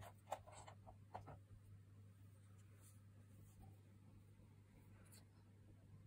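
Near silence over a steady low hum, with a few soft scratchy rustles and clicks in the first second and a half as hands and a cotton swab are handled close to a child's ear.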